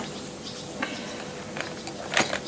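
A few faint clicks of a hand crimping tool and a butt-splice connector being worked on wires, over a steady faint hum.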